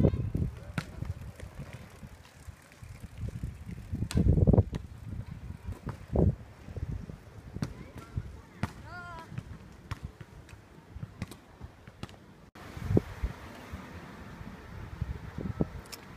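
Open-air ambience with faint distant voices, a few low rumbles and light clicks. About three-quarters of the way through, the background changes abruptly to a different, steadier ambience.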